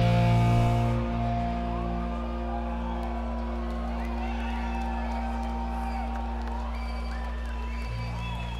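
A punk rock band's loud final chord drops away about a second in, leaving held amplified notes ringing on. Over them a festival crowd is cheering and whooping.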